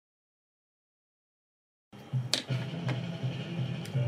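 Dead silence for about two seconds, an edit gap, then room sound cuts in with a low hum and a few sharp light clicks.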